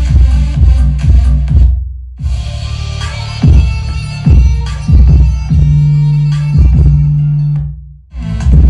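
Bass-heavy electronic music played through 15-inch Eros Target Bass car-audio subwoofers at about a thousand watts, with a strong low-end beat. The sound cuts out briefly about two seconds in and again near the end as playback is switched between the two woofers.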